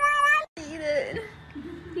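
Domestic cat meowing: a short, high meow that cuts off suddenly about half a second in, followed by a lower, wavering meow.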